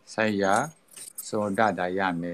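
A man speaking in two short phrases, with a brief high jingle in the pause between them about a second in.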